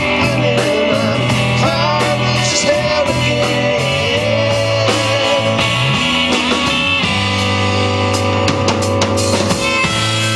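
Live rock band playing, with electric guitars over a bass line and drum kit. A lead line bends and wavers in pitch through the first few seconds.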